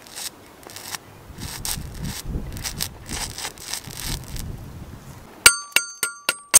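Stick-welding arc run off two car batteries wired in series for 24 V, crackling and sputtering irregularly as a thin stainless steel rod burns onto stainless tube. Near the end the crackle stops and a bright metallic ding rings out twice in quick succession.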